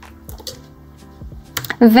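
Laptop keyboard keys being pressed: a few light, scattered clicks.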